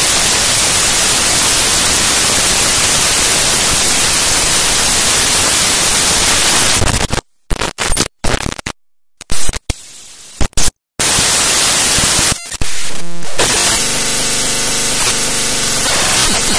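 Glitch track built from raw data played as audio: dense, loud static hiss for about seven seconds, then a stuttering stretch of abrupt cut-outs into dead silence. The hiss resumes and, near the end, gives way to a buzzy pattern of steady tones.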